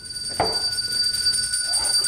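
A bell rung to call for service: a steady high ringing tone hangs on, with a fresh strike about half a second in.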